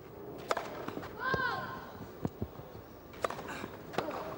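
Tennis rally: sharp knocks of the ball being struck and bouncing, several spread over a few seconds, over a steady crowd murmur, with a short rising-and-falling cry about a second and a half in.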